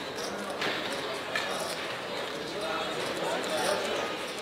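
Background chatter of a casino crowd, with a few sharp clacks of plastic roulette chips as the dealer gathers and handles them on the table.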